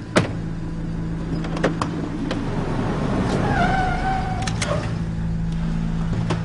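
Idling car engines make a steady low hum. A sharp knock comes just after the start, like a car door shutting, and a few lighter clicks follow. Past the middle, a held, slightly wavering higher tone lasts about a second and a half.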